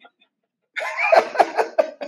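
A man laughing in a few short, breathy bursts, starting about three-quarters of a second in after a brief silence.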